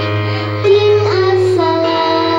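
A young girl singing into a microphone over a backing-music track; her voice comes in about half a second in, slides up and holds long notes.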